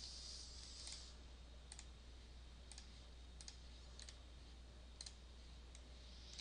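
Faint clicks of a computer mouse, about one a second, over near-silent room tone with a steady low hum.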